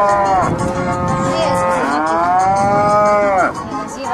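Cow mooing twice in long calls that rise and then fall in pitch. The first call ends about half a second in; the second starts about two seconds in and stops shortly before the end.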